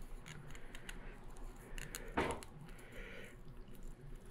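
Faint handling sounds of thread being wound by hand around the tenon of a wooden woodwind joint: small scattered clicks and soft rustles, with one louder brief rustle about two seconds in.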